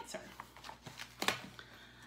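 Faint rustle of a stack of paper worksheets being handled and set down, with two soft knocks about a second in.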